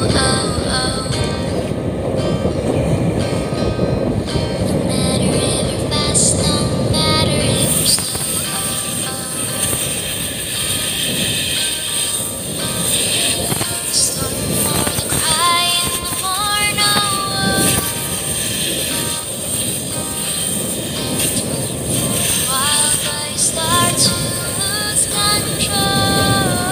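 Music with a stepping melody over the steady rumble and wash of a motor boat under way. The low rumble drops somewhat about eight seconds in.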